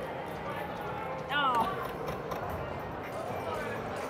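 IGT Prosperity Link slot machine's bonus-round music and sound effects, with a short, louder falling tone about a second and a half in.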